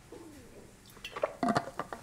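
A man swallowing a drink, a faint throaty gulp. It is followed by several light clicks and knocks as the drink container is handled at the desk.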